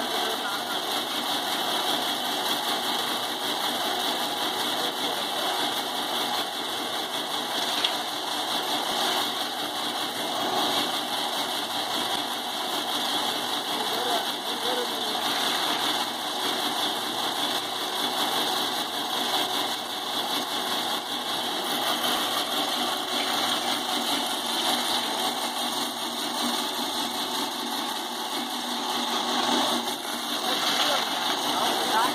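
Groundnut stripping machine running steadily, a constant mechanical drone from its turning bar drum as peanut plants are held against it to strip off the pods.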